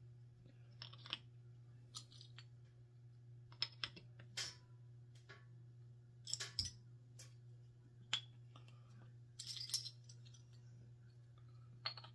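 Metal beer bottle caps clicking and clinking as they are picked from a loose pile and pushed into drilled holes in a wooden plaque, some popping right in. Light, scattered clicks over a faint steady hum.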